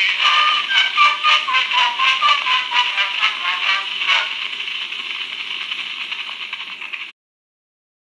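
Excelsior cylinder phonograph playing a cylinder record through its horn: the instrumental close of a song, thin and hissy. The music ends about four seconds in with a click, leaving only the steady hiss of the stylus running on the cylinder until the sound cuts off sharply near the end.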